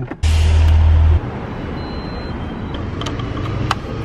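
Steady traffic noise of a city street. It opens with a loud low rumble that starts and stops abruptly within the first second.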